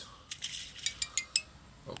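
A quick run of about seven short, sharp, high clicks over about a second.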